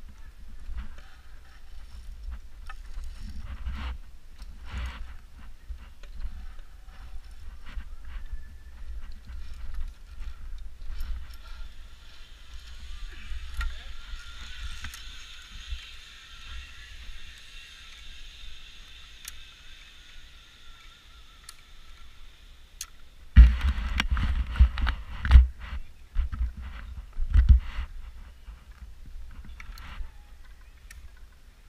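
Rumbling handling noise on a body-worn camera as a climber crosses a high rope course, with light metallic clinks of safety carabiners on the steel belay cable. A run of heavy knocks and bumps comes near the end.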